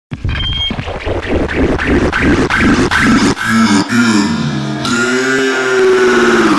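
Opening of a bass-boosted electronic dance track: about three seconds of choppy, heavily bass-laden pulses, then pitched synth tones that bend and glide in pitch.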